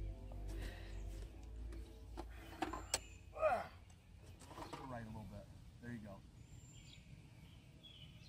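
Background music fading out over the first second or so, then a couple of sharp clicks and a man's loud, wordless exclamation with a wavering pitch about three and a half seconds in, followed by shorter vocal sounds.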